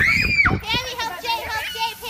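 Young children's voices at play: a high squeal in the first half second, then laughter and chatter.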